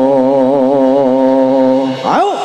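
A man's voice, amplified through a microphone, holding one long sung note with a slight waver in pitch, breaking off just before the end.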